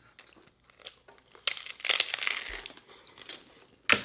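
Crunching and crackling of a taco being bitten and chewed, close to the microphone. It is faint for the first second or so, then loud and crackly until just before the end.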